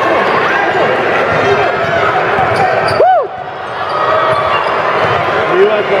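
Indoor basketball game: a ball dribbling on a hardwood court and sneakers squeaking, over a steady din of spectators' voices. One sharp squeak comes about three seconds in, and the sound drops off briefly just after it.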